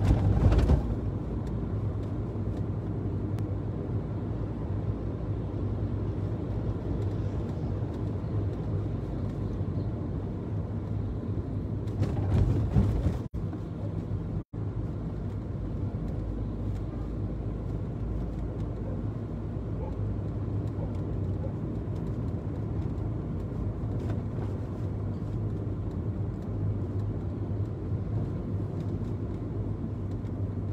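Steady engine and road noise of a moving car heard from inside it, with a low drone throughout. It swells louder in the first second and again around the middle, followed by two brief cut-outs in the sound.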